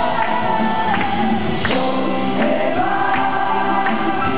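Live acoustic rock band playing a song: several voices singing together over strummed acoustic guitars and drums, with regular drum strikes.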